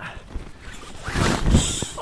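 Nylon tent fabric rustling and a zipper being pulled as someone climbs out of a tent, loudest from about a second in.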